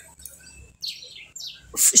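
A small bird chirping twice, two quick high calls that fall in pitch.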